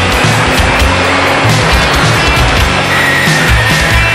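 Fast psychobilly punk-rock with no vocals: drums, electric guitar and a walking double bass line. A high held note comes in about three seconds in and slides slightly down.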